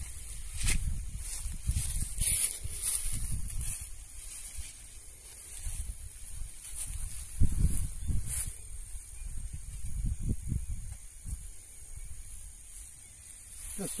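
Nylon cast net being lifted from the water and handled on grass, its mesh rustling and crackling irregularly, with uneven low rumbles.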